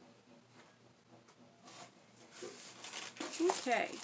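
Rustling of packing material in a cardboard box as hands rummage through it, building up in the second half after a quiet start, followed by a short spoken 'okay'.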